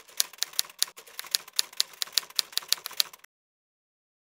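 Typewriter keystroke sound effect: a steady run of crisp key clicks, about five a second, typing out an on-screen title and cutting off a little over three seconds in.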